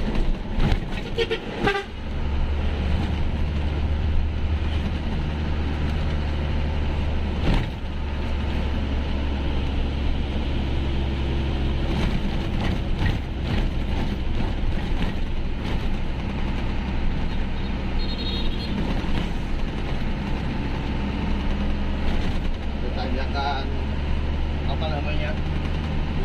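Truck engine running steadily under way, heard from inside the cab as a strong low drone. There is a short dip in the drone about seven seconds in, and a horn sounds near the start.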